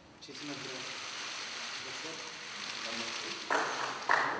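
A steady hiss-like noise with faint, indistinct voices underneath, and a louder sound that cuts in near the end.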